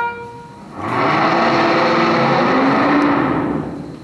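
Orchestral soundtrack music from an early-1930s sound film, played over speakers in a hall. After a short lull, a fuller, louder passage swells in about a second in and fades near the end.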